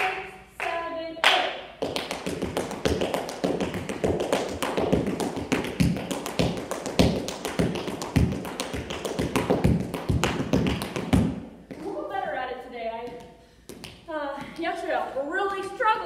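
Tap shoes striking a hard studio floor in a rapid, continuous run of taps for nearly ten seconds. It is a fast tap step built from paradiddles and heel drops. The taps stop short, and a woman speaks briefly near the start and again in the last few seconds.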